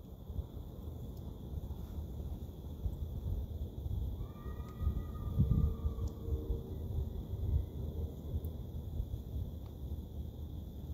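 Low, uneven rumble of wind on the microphone outdoors, with a faint drawn-out tone about four to six seconds in.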